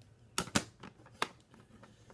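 Hard plastic graded-card slabs clicking and tapping as they are handled and set down: a few sharp clicks, two close together, then a weaker one and one more about a second in.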